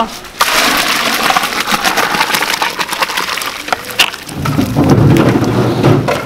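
Hot soup splashing and sloshing in a large steel stockpot as a plastic bucket is dipped into it and tipped. There is a run of crackling splashes, then a heavier, deeper slosh near the end.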